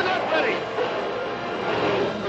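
Dramatic film score over shouting voices and splashing water.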